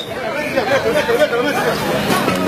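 Several people's voices talking over one another, too mixed to make out words.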